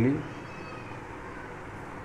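The tail of a spoken word, its pitch rising as it ends. A steady background hiss follows and continues to the end.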